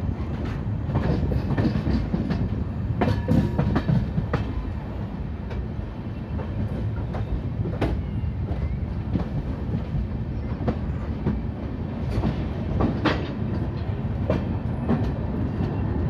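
Passenger train coaches running into a station, heard from an open coach door: a steady low rumble with irregular clicks and knocks as the wheels cross rail joints and points.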